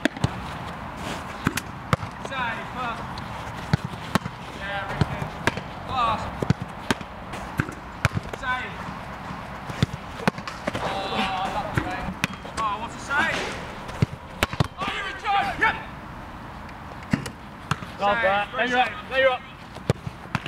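Repeated sharp thuds of a football bouncing on artificial turf and striking goalkeeper gloves, irregular knocks every second or so, amid men's voices.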